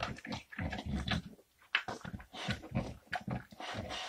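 A dog with its head down in a corner, nosing at the floor and making a run of short, irregular sniffing and snuffling sounds, with a brief pause a little before halfway.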